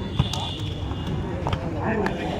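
Voices of players and spectators at an outdoor volleyball court talking and calling out, with two sharp knocks.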